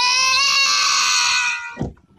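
A small child's long crying scream, rising in pitch at the start and then held steady for nearly two seconds before it breaks off near the end.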